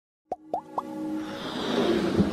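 Animated logo intro sting: three quick rising plops about a quarter second apart, then a swelling music build that grows louder.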